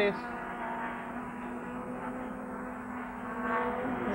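Racing touring cars' engines running at speed on the circuit, a steady engine drone heard through old broadcast track audio, growing a little louder near the end.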